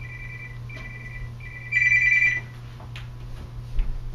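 Mobile phone ringtone: a two-note electronic tone sounding in three short pulses, then a much louder one that stops after about two and a half seconds. A single click follows.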